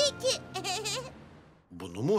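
A cartoon character's high, wavering voice in two short sing-song phrases without clear words, fading out about a second in; ordinary speech starts again near the end.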